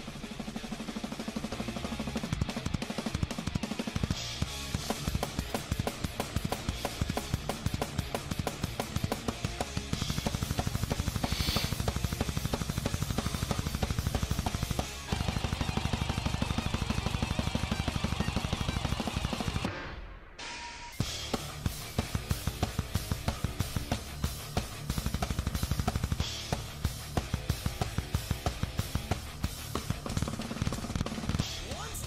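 Drum kit played fast in dense, rapid strokes over a backing music track, with a brief break about twenty seconds in.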